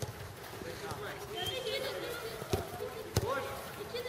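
A football kicked twice, two sharp thuds a little over half a second apart in the second half, over the calls and shouts of young players.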